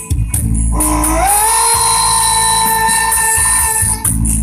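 A woman singing a song over a backing track, sliding up into one long held note about a second in and holding it almost to the end.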